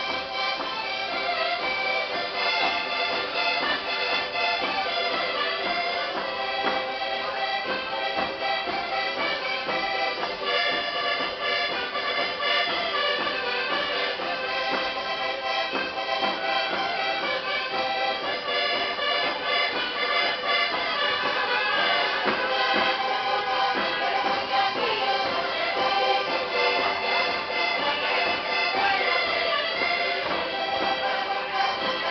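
Live Portuguese folk-dance music of a rancho folclórico, led by accordion, playing a steady dance tune.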